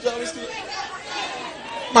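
Speech only: a low murmur of voices talking over one another.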